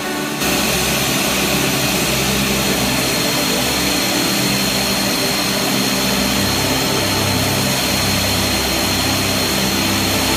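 Turboprop aircraft engines running, a steady roar with a thin high whine over it, cutting in suddenly about half a second in.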